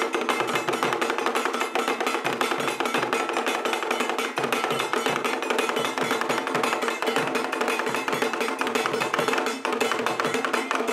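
Ghanaian traditional drum ensemble playing a fast, dense rhythm, with drums struck by both sticks and bare hands.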